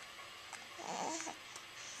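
A baby's soft, breathy grunt about a second in.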